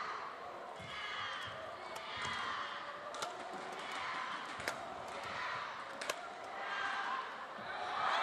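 Badminton rackets striking a shuttlecock in a fast doubles rally: a string of sharp cracks roughly every second or so, over steady noise from a large crowd.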